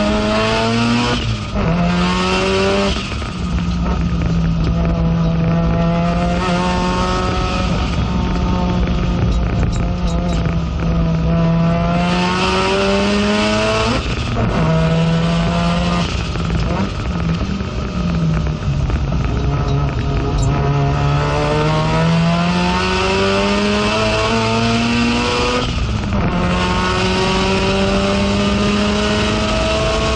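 Mazda RX-7 FD3S race car's rotary engine heard from inside the cockpit under hard acceleration. Its pitch climbs steadily and drops briefly at gear changes: twice within the first three seconds, once about fourteen seconds in, and once near the end.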